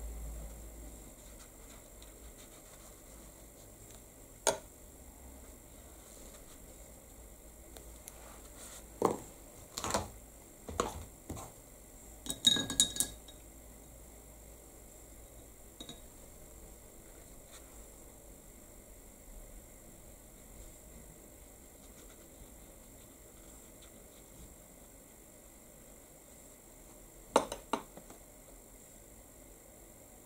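Scattered light clinks and knocks of small hard objects being handled on a craft table, the loudest a quick run of ringing, glassy clinks about twelve to thirteen seconds in.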